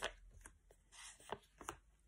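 A stack of paper flashcards being handled and flipped in the hands: a few faint soft taps and a brief papery rustle around the middle.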